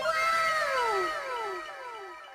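Edited-in sound effect: a meow-like cry falling in pitch, repeated about twice a second as a fading echo.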